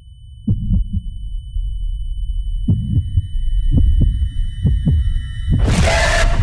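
Trailer sound design: low, heartbeat-like double thuds over a dark low rumble and a faint steady high tone, the beats coming closer together as it goes. Near the end a loud rush of noise cuts in.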